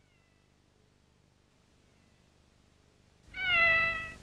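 A cat meows once, a single call of under a second that falls slightly in pitch, about three seconds in.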